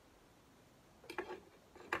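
Faint clicks and taps of small fly-tying tools being handled at the bench, a cluster a little over a second in and another near the end, over quiet room tone.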